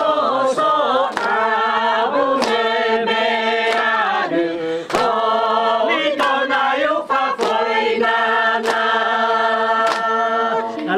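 A group of voices singing together in a chant-like style, holding long notes in harmony, with a sharp beat about every second and a quarter.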